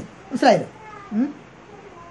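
A cat meowing twice: a falling meow about half a second in, then a shorter rising call about a second later.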